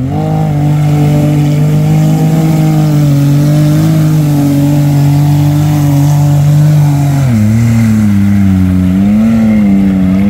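Lifted Can-Am Maverick X3 side-by-side's engine held at high revs as it ploughs through deep water on big mud tires, with water splashing. About seven seconds in the revs drop, then rise and fall.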